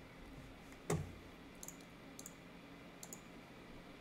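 A few faint computer mouse clicks over quiet room tone, with one louder click or knock about a second in.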